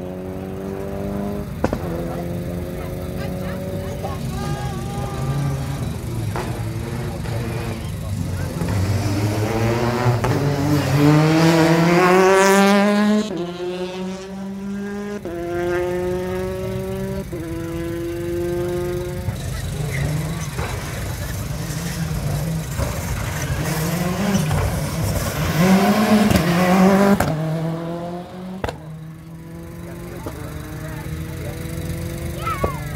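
Rally car engines accelerating hard up through the gears. The pitch climbs and drops back at each upshift, with the loudest stretch about twelve seconds in and another loud spell near the end.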